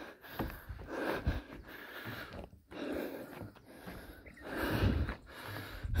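A person breathing hard close to the microphone, in irregular puffs.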